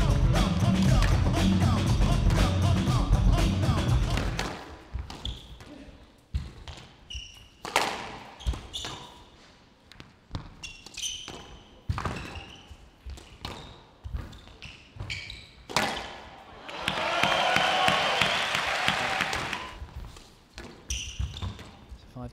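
Loud music for about the first four seconds, then a squash rally: the ball cracking off rackets and the court walls in sharp separate knocks, with short high squeaks of shoes on the court floor between them.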